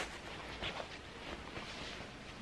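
Faint rustling of a hanhaba obi's fabric as it is wrapped around the waist and pulled, with one soft brush about a third of the way in.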